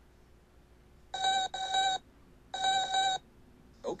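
Electronic beeping, a steady buzzy tone in two bursts of about a second each, the first broken briefly in the middle.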